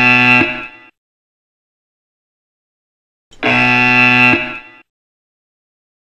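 Yo-Yo intermittent recovery test signal: two long, buzzer-like electronic tones about four seconds apart, the first ending about a second in and the second sounding near the middle. They time the 20 m shuttle at 18.5 km/h, marking the turn at the far cone and then the return to the start line, where the recovery period begins.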